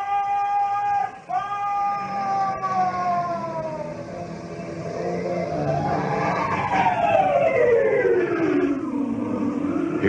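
Radio-drama sound effect of a sailing schooner's rigging creaking in the wind: long drawn-out pitched creaks. One is held, then sinks slowly in pitch; a second rises and then falls away over several seconds.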